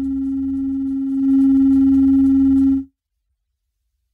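A steady electronic tone held on one low-mid pitch over a low hum. It gets louder a little over a second in and cuts off suddenly just before three seconds, leaving dead silence.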